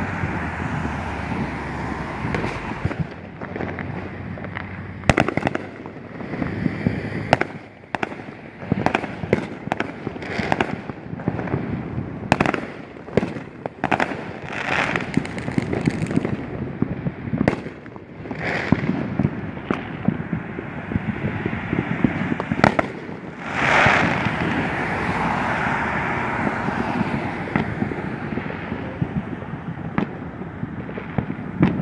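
Fireworks going off: scattered bangs and pops, at times several in quick succession, over steady background noise.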